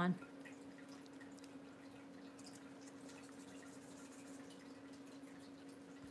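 Quiet room tone with a steady low electrical hum, and a few faint ticks about two to three seconds in.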